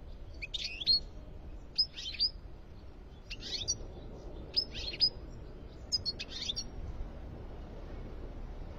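European goldfinch giving short twittering song phrases, five brief bursts about a second and a half apart.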